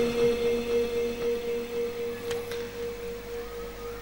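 A single steady ringing tone through the stage loudspeaker system, slowly fading away, left over from the reciter's last held note.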